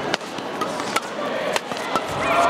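Badminton rackets striking a shuttlecock in a fast doubles rally: several sharp hits, about four, under the indoor court's background noise.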